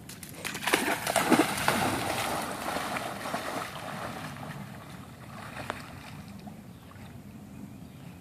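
A dog plunging into a lake and splashing through the shallows, loudest in the first second or two, then swimming out with only faint sloshing.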